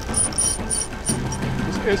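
Spinning fishing reel being cranked against a hooked fish, giving a quick series of high clicks in the first second and a half, over the steady rush of river rapids. A low held music note comes in about halfway.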